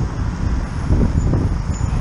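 Road traffic noise from a van driving just ahead of a bicycle, heard through a cyclist's camera microphone with uneven low wind buffeting.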